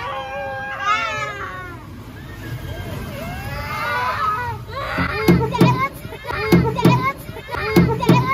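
Young children's high-pitched voices squealing and shouting while playing rough. From about five seconds in come loud short bursts, mostly in pairs.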